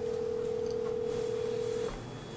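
Telephone ringback tone: a single steady tone lasting nearly two seconds, cutting off abruptly just before the end.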